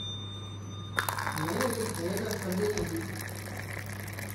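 Hot tea pouring from a stainless-steel flask dispenser into a paper cup. The pour starts with a click about a second in and then runs as a steady splashing stream.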